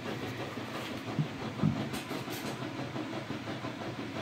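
Steady background hiss with a few faint knocks and rustles of a paperback book being handled and lifted off a table.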